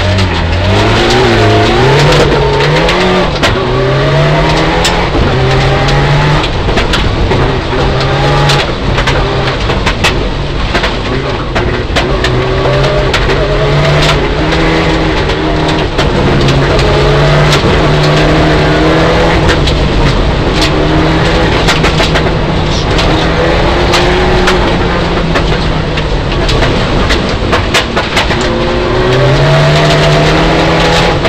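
Mitsubishi Lancer Evolution IX rally car's turbocharged four-cylinder engine, heard from inside the cabin, running hard and revving up and dropping back repeatedly through the gears. Frequent sharp knocks come from gravel hitting the car.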